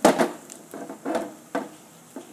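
Hard plastic action figures knocking and clacking together as they are moved by hand in a mock wrestling bout: a handful of light, sharp knocks spread over a couple of seconds.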